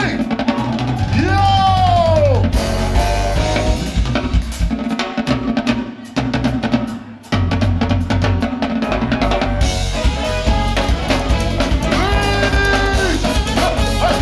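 A live funk band playing, with a drum kit driving it alongside bass and a horn section. Around six seconds in the band drops out for about a second, then the full groove comes back in, with held horn notes near the end.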